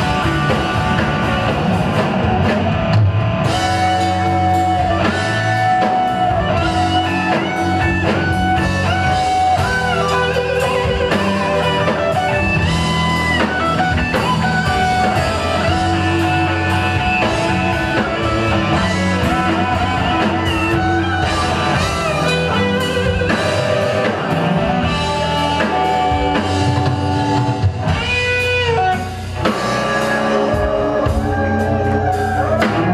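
A live band playing a slow blues: a Les Paul-style electric guitar plays lead lines with bent notes over bass guitar and drum kit.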